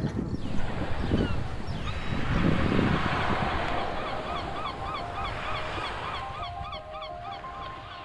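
A flock of birds honking in quick repeated calls, about three a second and growing busier, over a steady rushing noise. Steady held tones join the calls in the last couple of seconds.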